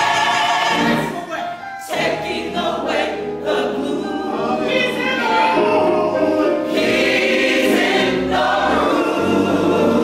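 A gospel church choir singing in full voice, the sound dipping briefly about a second in before the voices swell back.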